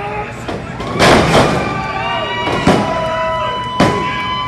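Pro wrestler slammed onto the ring canvas with a loud crash about a second in, and the crowd cheers, with one long held shout over it. Two sharp slaps follow a second or so apart: the referee's hand hitting the mat to count the pin.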